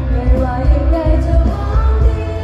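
Live Thai pop song played through a concert sound system: a sung melody over a band, with a loud, regular bass and drum beat.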